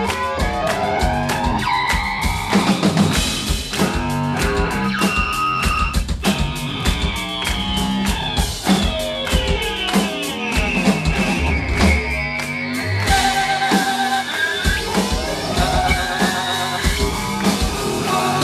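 Live noise-punk duo playing loud: distorted electric guitar through a Marshall amp with a pounding drum kit, the guitar notes sliding up and down the neck.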